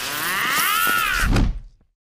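Synthetic energy-blast sound effect: a bright sweeping tone that arcs up and back down, ending in a low thump and cutting off sharply about one and a half seconds in.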